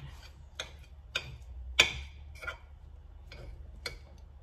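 Metal fork clinking against a ceramic dish while stirring and scooping spring-roll filling: about six light clinks at uneven intervals, the loudest about halfway through.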